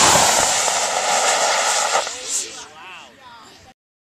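Model rocket motor igniting with a sudden blast and burning with a loud rushing hiss for about two seconds as the rocket lifts off, then fading away. The sound cuts off suddenly near the end.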